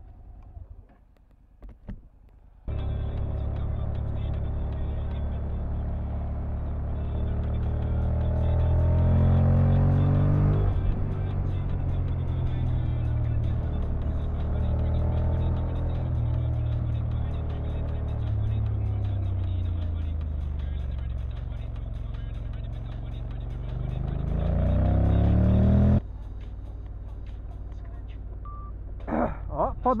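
Honda NC motorcycle engine heard from the rider's seat while riding: its pitch climbs under acceleration, drops suddenly about ten seconds in as the gearbox shifts up, falls away in the middle as the bike slows, and climbs again near the end before the sound cuts off.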